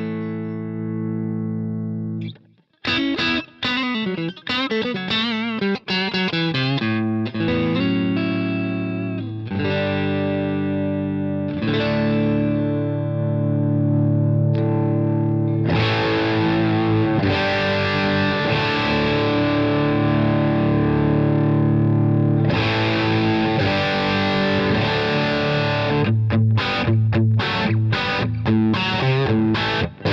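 Electric guitar played through an Egnater Boutikit 20-watt, 6V6-powered Marshall-style tube amp head with the gain being turned up. A held chord cuts off about two seconds in, then riffs and chords follow, and from about halfway the sound turns denser and more overdriven.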